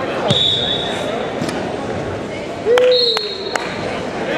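Crowd chatter echoing in a gymnasium, with two high, steady whistle blasts of about a second each: referee whistles. Near the end a voice calls out loudly, and a few sharp knocks ring out in the hall.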